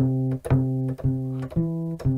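Sampled acoustic bass from Cubase's HALion instrument, played from a MIDI keyboard: four plucked notes about half a second apart, the first three on one pitch and the fourth a step higher.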